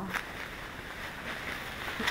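Plastic bubble wrap rustling softly as it is handled and pulled open, with a brief crackle just after the start.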